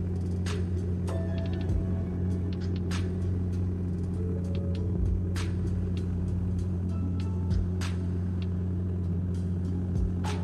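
Steady drone of a turboprop airliner's propellers heard inside the cabin in cruise, a low hum with a steady pitch. Background music with sharp percussive hits plays over it.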